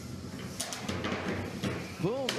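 A large flame burst whooshing over fighting combat robots, with a few sharp knocks in the middle.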